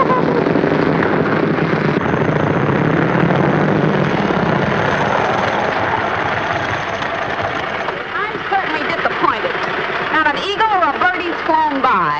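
Small motor scooter engine running steadily, its sound slowly fading over the first eight seconds. From about eight seconds in, voices are heard over it.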